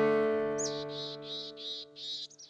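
The last chord of the intro music, held and fading away, with a small bird's high chirps repeating quickly, about three a second, from about half a second in.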